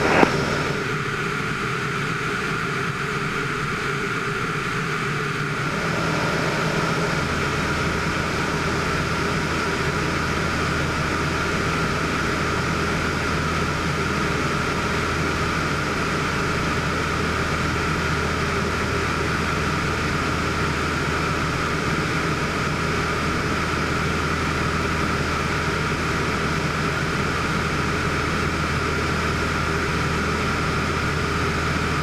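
Van's RV-6 light aircraft's piston engine and propeller droning steadily, heard inside the cockpit in cruise, growing slightly louder about six seconds in.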